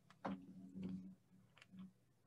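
Faint close-up chewing of a bite of pizza: soft, wet mouth clicks, the clearest about a quarter of a second in, with a low hum coming and going.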